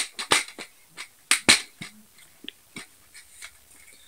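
Plastic Blu-ray case being handled and opened, with a few sharp clicks and snaps: one at the start, two close together about a second and a half in, then lighter ticks.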